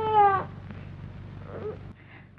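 A young child's drawn-out crying wail, sagging slightly in pitch, breaking off about half a second in. Then only the old soundtrack's steady low hum remains.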